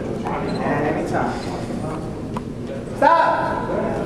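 Voices in a hall: indistinct talking with a couple of sharp knocks, then a loud voice about three seconds in.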